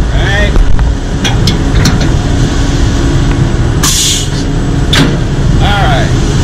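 Concrete mixer truck's diesel engine running steadily, with a few metal knocks as the washout bucket is hung on the end of the discharge chute, and a short burst of air hiss about four seconds in.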